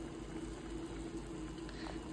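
Large stainless-steel stockpot of chicken phở broth at a rolling boil, bubbling steadily around a whole chicken, charred onion and ginger.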